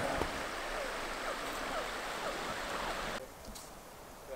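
Steady rush of a river running through a snowy wetland, with a few faint short chirps over it. It cuts off abruptly about three seconds in, leaving a much quieter background.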